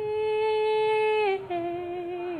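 A young woman's unaccompanied singing voice holding one long steady note, then stepping down to a lower held note about a second and a half in.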